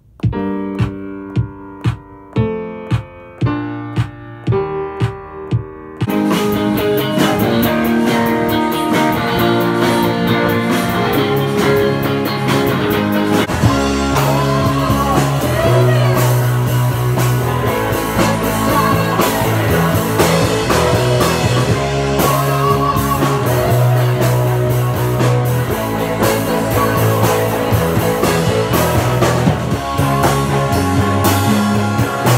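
A few seconds of separate pitched notes played on a tablet music app, then, about six seconds in, a rock band rehearsing: drum kit and electric guitars playing together. A strong low bass line comes in about fourteen seconds in.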